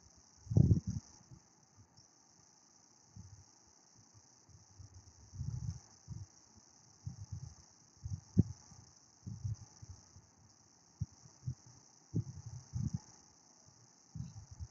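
Steady high chirring of crickets in the background, broken by irregular short, muffled low thumps and bumps. The loudest thump comes about half a second in.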